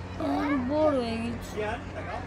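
A high human voice in one long, wavering, drawn-out phrase that slides down in pitch and then holds, followed by a brief short note near the end.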